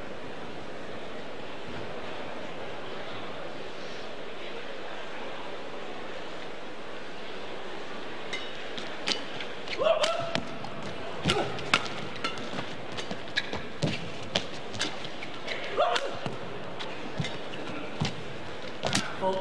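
Badminton rally: rackets striking the shuttlecock with sharp cracks and shoes squeaking on the court, starting about eight seconds in, over the steady background of a crowded indoor hall.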